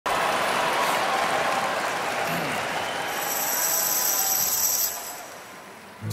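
Large arena audience applauding, dying away over the last second before the song begins.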